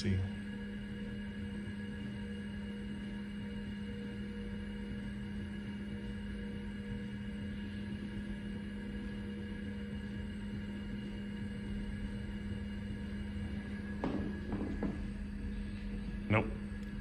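Steady machine hum from a running Apple Lisa computer and its ProFile hard drive: a low even tone with a few fainter higher tones held throughout, and a few brief faint sounds near the end.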